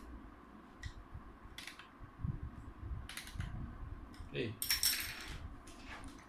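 Light clicks and taps of hands handling a plastic laptop body, with a dull thump a little after two seconds and a brief scraping rustle about five seconds in.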